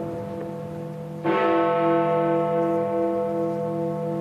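Big Ben, the Great Bell of the Palace of Westminster, striking the hour of eleven. One strike comes about a second in, over the hum still ringing from the previous stroke, and is followed by a long, slowly pulsing ring.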